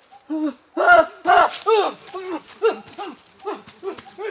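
A rapid series of wordless vocal cries, about three or four a second, each rising and then falling in pitch. Several overlap and are loudest about a second in.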